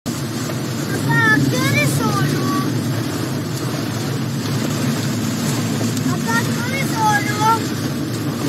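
Steady rumble of a car driving in heavy rain, heard from inside the cabin. A high child's voice speaks twice over it, about a second in and again near the end.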